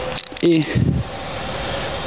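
Ratchet wrench with a 15 mm socket being worked by hand, giving a steady run of fast clicking through the second half.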